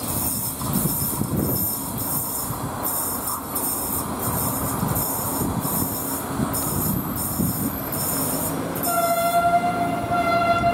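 Passenger coaches rolling slowly around a curve, a steady low rumble of wheels on rails with a hissing, high-pitched rasp from the wheels repeating about twice a second. About nine seconds in, a train horn starts: one steady, held note.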